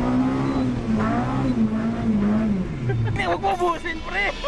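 Mitsubishi Lancer MX's MIVEC four-cylinder engine under hard acceleration, heard from inside the cabin: the revs climb, hold high, then fall away about two and a half seconds in. A voice follows near the end.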